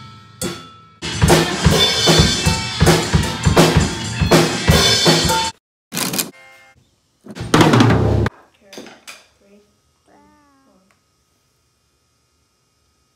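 Acoustic drum kit played with sticks: rapid, loose snare, bass drum and cymbal hits for about four seconds. Then come two short loud bursts, one of them an electronic keyboard struck with a flat hand, and a few faint sounds trailing off.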